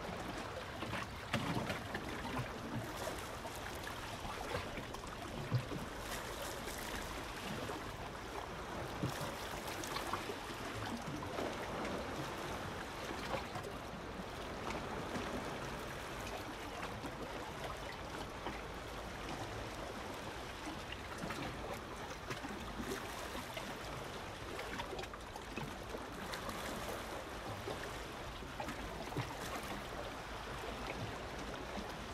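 Small waves lapping and splashing against shoreline rocks, a steady wash of water with irregular little splashes, a couple of them louder in the first few seconds.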